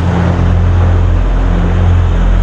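Aircraft flying past low, a dense rushing air noise over a steady low hum, as a dubbed-in fly-by effect for a glider coming in to land.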